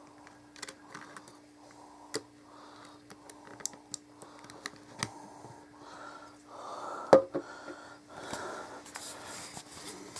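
Small plastic clicks and handling noise as an SD card is pushed into a Nikon Coolpix S5200 compact camera and the camera is handled, with a sharper click about seven seconds in and soft rubbing later on. A faint steady hum sits underneath.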